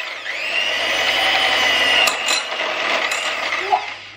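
Electric hand mixer running, its beaters churning butter and sugar in a glass bowl, with a steady motor whine that dips briefly just after the start and then holds. A few sharp clicks come through, and the motor cuts off near the end.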